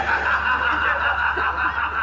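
Laughter over a loud, steady background noise, while the stage music's deep bass is paused.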